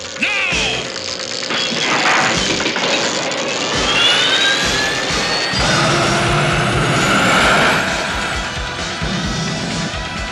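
Cartoon sound effects over dramatic music: a rising whine about four seconds in, then a rocket-thrust rumble from about halfway as the jettisoned power core blasts off into space.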